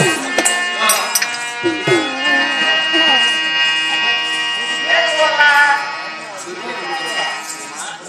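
Live folk-drama music: a barrel-shaped hand drum plays a few strokes in the first two seconds and then stops, over a steady held reed-organ drone, with a voice singing across it around five seconds in. It grows quieter near the end.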